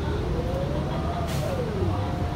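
A 2022 Gillig Low Floor Plus 40-foot bus's natural-gas drivetrain heard from inside the cabin, with a low running rumble under a whine that rises as the bus pulls ahead. The whine then drops in pitch like a gear change, with a brief hiss about halfway through.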